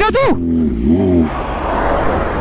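An SUV's engine note rising and falling, then its engine and tyre noise rushing past close by.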